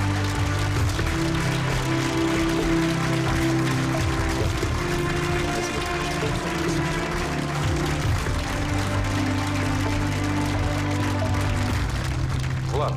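Studio audience applauding over music with long held chords.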